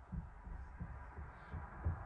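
Footsteps on a staircase: a handful of low, dull thuds at an uneven pace.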